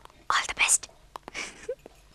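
Whispering: two short whispered phrases, with a few faint clicks between them.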